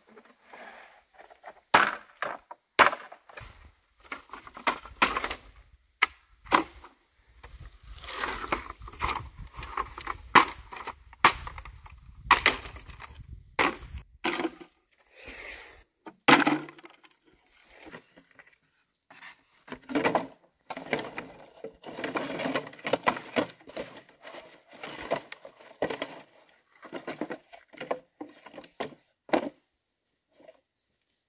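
Dry bamboo poles knocking and clattering against one another and the ground as they are handled and stacked, in many irregular sharp knocks.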